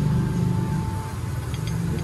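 A motor vehicle engine running steadily close by, a low even hum, with a thin steady tone in the first second or so.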